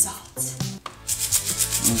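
A salt grinder twisted to grind Himalayan pink salt: from about a second in, a fast, even run of gritty ticks, over background music.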